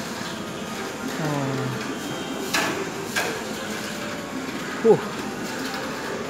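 Steady background hubbub of an indoor shopping mall. A man's short drawn-out exclamation comes about a second in, two sharp clicks follow around the middle, and a brief loud 'huh' comes near the end.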